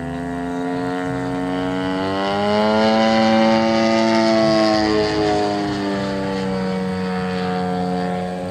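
DLE 111 twin-cylinder two-stroke gas engine of a 100cc-class RC Yak aerobatic plane in flight. Its buzzing drone rises in pitch and grows louder over the first three seconds, then eases slightly lower and quieter.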